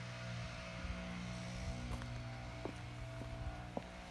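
A steady low mechanical hum, with a few faint clicks in the second half.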